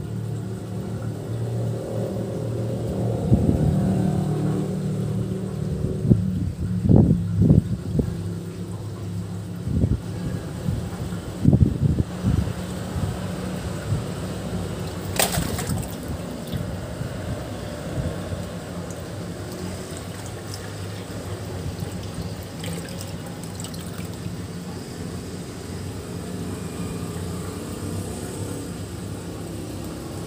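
Water pouring from a hose into a fish pond, splashing steadily, with a low steady hum underneath. Several heavier low thumps come in the first half, and a single sharp click near the middle.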